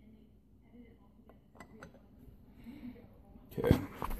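Glassware and a metal black-and-tan layering spoon being handled on a table: mostly faint, with a few small clicks, then a louder knock near the end as the spoon comes off the pint glass.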